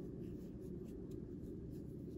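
Faint scratching and soft ticks of a metal crochet hook drawing cotton yarn through stitches while single crochets are worked.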